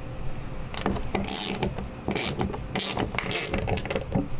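Hand ratchet with a Torx T45 bit clicking in short bursts as it is swung back and forth on a Ford Bronco tailgate hinge bolt.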